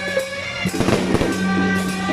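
Fireworks going off, with sharp bangs and crackle about two-thirds of a second in and a cluster around one second, over loud music with a sustained drone.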